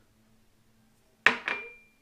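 A small glass set down on a countertop about a second in: two sharp knocks a quarter second apart, the second leaving a thin, high ringing tone.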